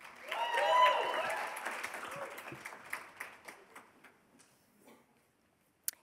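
A small audience applauding, with a few voices calling out briefly at the start. The applause fades within about three seconds into a few scattered claps.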